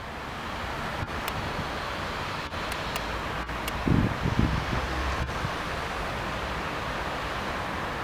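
Steady outdoor street ambience, an even wash of noise, with a gust of wind buffeting the microphone about four seconds in.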